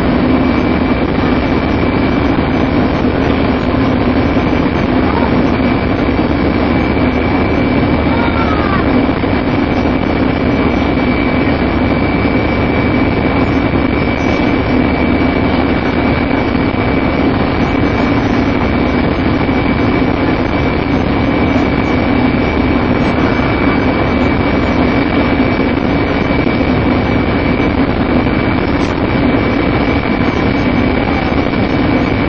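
MAN 18.220LF bus heard from inside, its six-cylinder diesel engine and road noise running at a steady cruise. A steady high-pitched whine sits over the engine drone.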